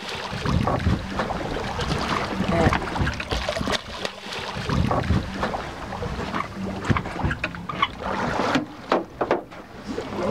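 Water splashing irregularly as a large skate thrashes at the surface beside the boat, over a steady low hum and wind on the microphone.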